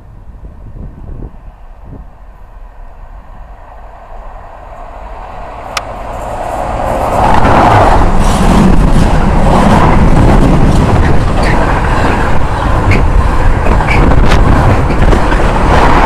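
Container freight train approaching and then running past close by. A low rumble builds slowly, and from about seven seconds it becomes a loud, continuous rush of wheels on rail, with scattered clicks and rattles from the container wagons.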